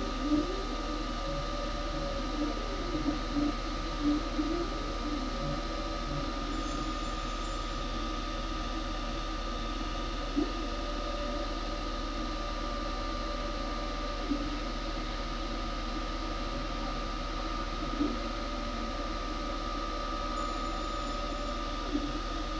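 A 20-watt diode laser cutter running: its motors whine in rising and falling glides as the head moves in the first few seconds, then run more evenly, over a steady high tone and low hum, with a few faint clicks about ten, fourteen and eighteen seconds in.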